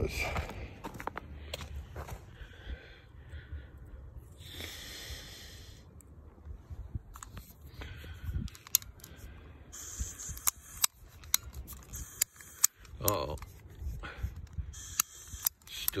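Torch lighter's igniter clicking over and over without catching, in a run of sharp clicks through the second half, after stretches of hissing. The torch is still wet, so it fails to light.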